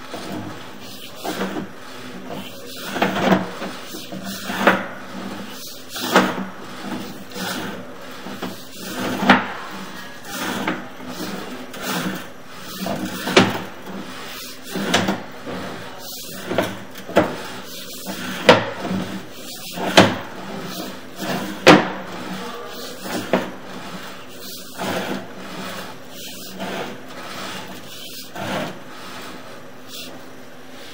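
Sewer inspection camera's push cable being fed down a plastic sewer line: irregular sharp knocks and rubbing, a knock every second or two.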